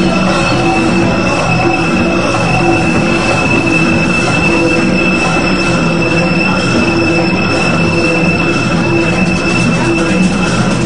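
Loud electronic rave music carried by a steady, high-pitched screeching tone held throughout, over a dense noisy wash with lower synth notes that come and go.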